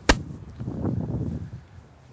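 A single sharp crack, like a hand clap or slap, just after the start, followed by low murmuring background noise.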